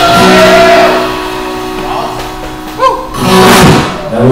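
Live acoustic guitar, electric bass and drum kit playing, with a man's voice singing over them. Near the end a loud, noisy swell rises across all pitches for under a second.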